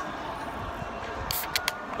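Outdoor city street ambience: a low, steady rumble of distant traffic and air. About a second and a half in comes a brief rustle and two short clicks close to the microphone.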